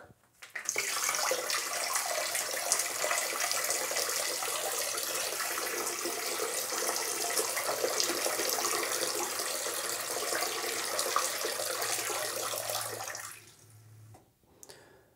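A thin stream of milk from a bottle, through a small hole cut in its top, running into the water of a toilet bowl, like a urine stream aimed at the water. It starts about half a second in, runs steadily, and dies away about a second before the end.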